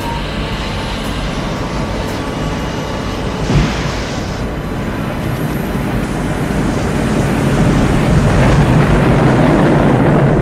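A loud, steady low rumble, vehicle-like, with a brief thud about three and a half seconds in, swelling louder near the end.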